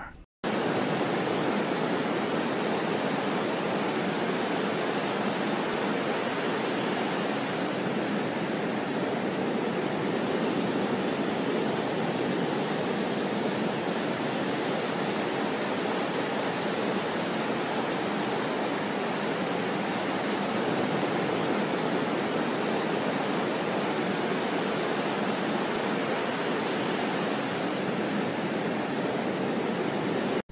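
A steady, even hiss of rushing noise, unchanging throughout, that starts suddenly just after the beginning and cuts off suddenly at the end.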